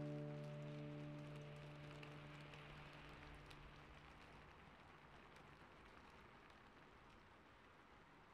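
The last held chord of the background music fades out over the first five seconds or so. After it comes a faint, steady hiss of rain-like ambience that keeps growing quieter.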